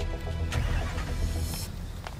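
Background drama music with sustained tones and a deep bass, stopping near the end. A passing car's noise swells over it from about half a second in and cuts off sharply just before the music ends.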